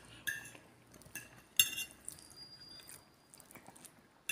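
Metal fork clinking against a ceramic dinner plate: a few short ringing clinks, the loudest about a second and a half in.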